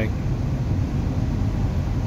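Steady low rumble and hiss of road and engine noise heard inside the cabin of a moving car.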